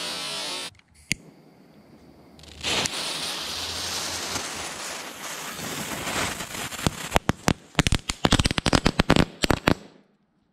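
Small fountain firework spraying with a steady hiss for several seconds, then a rapid run of sharp bangs and crackles near the end. There is a single click about a second in.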